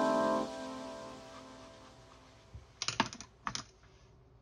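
Background music fading out, then a quick cluster of light clicks and taps a little under three seconds in as a wooden-handled bread lame is picked up from the counter.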